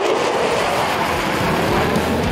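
Jet engine noise from a pair of U.S. Air Force Thunderbirds F-16 Fighting Falcons flying past overhead, a steady rushing noise.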